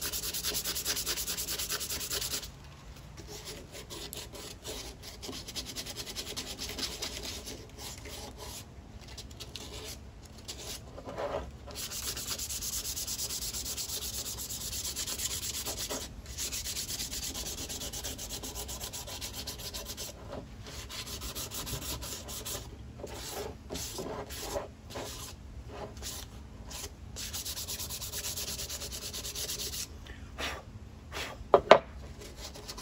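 A turned cedar inkwell being sanded by hand with sandpaper: runs of rasping strokes broken by a few short pauses.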